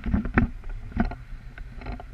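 Airflow buffeting the camera microphone during tandem paragliding flight, a steady low rush, with a few sharp knocks and rustles from the harness, risers and gear: a cluster near the start, one about a second in and another near the end.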